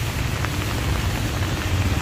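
Steady rain falling on paving, an even hiss with a low rumble beneath it.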